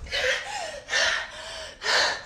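A young woman gasping hard for breath, out of breath from exertion: three loud gasping breaths about a second apart, with a faint whimpering voice between them.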